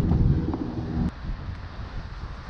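Steady low motor hum with several tones that cuts off suddenly about a second in, followed by wind rumbling on the microphone.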